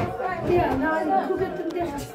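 Several people talking at once: lively, overlapping chatter of adult voices in a room.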